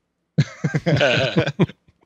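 A man's short burst of non-speech vocal sounds over a call microphone. It starts suddenly about half a second in and breaks into quick pieces for about a second before stopping.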